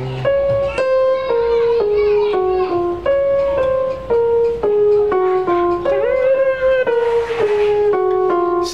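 Portable electronic keyboard playing a slow single-note melodic line, about two notes a second, each note struck and fading, mostly stepping downward in the middle register.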